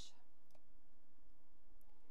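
A faint computer mouse click about half a second in, against steady low room noise.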